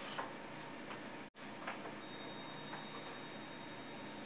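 A few faint, light clicks and taps as a picture frame is handled, flipped over and its backing fitted, over a low room hiss.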